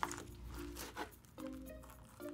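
Soft background music with a few light, irregular knife strokes as a kitchen knife chops tomato on a plastic cutting board, the strongest stroke about a second in.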